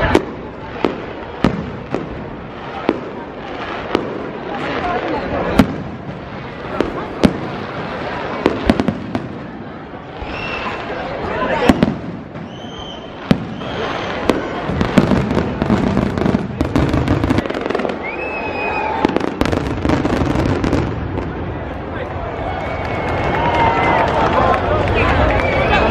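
An aerial fireworks display going off overhead: a string of sharp, irregular bangs, several loud single reports, with a few short whistles among them.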